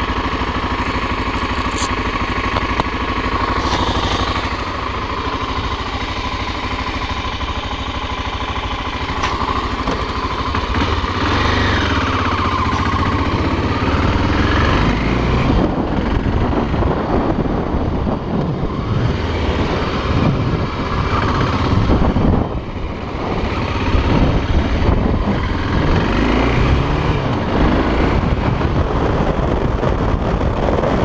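BMW F650 motorcycle engine idling steadily for about the first ten seconds, then pulling away and riding off, its pitch rising and falling as the throttle opens and it changes up through the gears.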